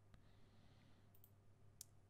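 Near silence with a few faint computer mouse clicks, the loudest one near the end.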